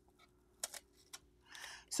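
Clear heat-resistant tape peeled off paper, giving a few short sharp ticks, then a soft paper rustle near the end as the pressed sheet of copy paper is lifted away.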